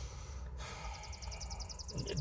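Quiet outdoor background: a low rumble, with a rapid, high-pitched trill starting about half a second in.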